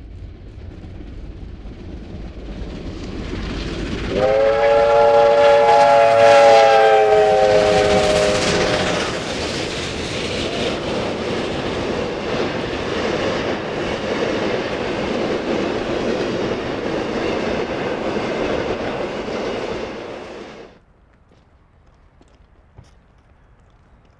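Triple-headed R class steam locomotives approaching and passing, the sound building as they near. A steam whistle sounds a long chord for about five seconds, dropping slightly in pitch as the engines go by, then the steady noise of the carriages passing on the rails follows until it cuts off suddenly near the end.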